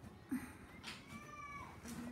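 A cat meowing: one long meow that rises and then falls in pitch, starting about half a second in.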